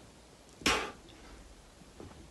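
A man's single sharp exhale, a short breathy burst under a second in, as he pushes up through a decline press-up.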